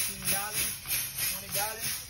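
Air-operated double-diaphragm pump cycling as it pumps oil, its air exhaust hissing in a steady rhythm of about three strokes a second.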